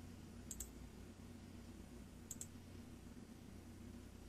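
Computer mouse clicking through software settings: two faint double clicks about a second and a half apart, over a low steady hum.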